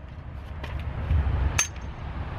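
Low wind rumble on the microphone, with a faint click or two and one sharp metallic clink about one and a half seconds in, from metal suspension-kit parts being handled.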